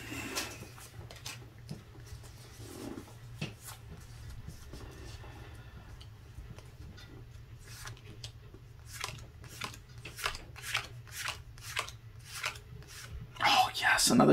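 Pokémon trading cards being flicked through by hand, card sliding over card in a series of soft, sharp flicks that come more often in the second half, a few a second. A steady low hum runs underneath.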